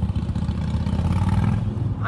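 A motor vehicle passing on the street, a low engine rumble that swells to its loudest about three-quarters of the way through and eases off near the end.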